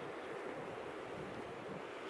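Steady outdoor ambience: a faint, even rushing noise with no distinct events.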